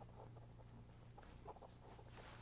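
Near silence: a low steady hum from the recording, with a few faint light scratches about a second in.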